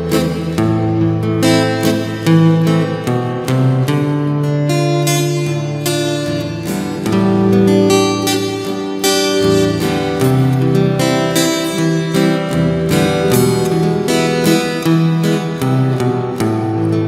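Acoustic guitar playing the slow instrumental introduction to a Vietnamese bolero ballad: a picked melody over held low bass notes.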